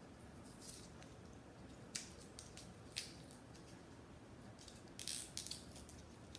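Faint rustling and crinkling of packaging as a smartwatch charging cable is unwrapped and handled. There are two sharp clicks about two and three seconds in, and a longer rustle near the end.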